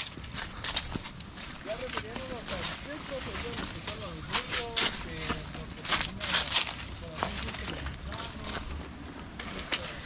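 A voice talking some way off, faint beneath the nearby sounds, with short rustles and knocks close to the microphone.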